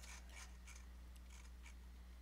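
Near silence: room tone with a steady low electrical hum and a few faint, scattered clicks and scratches.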